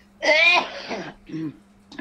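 A person clearing their throat, loudly, a quarter of a second in, followed by two shorter, fainter throat sounds.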